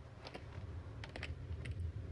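Light, faint clicks and taps of a small cardstock paper pad being handled and opened by hand: a pair of clicks a quarter second in, a quick cluster around one second, and a few more near the end.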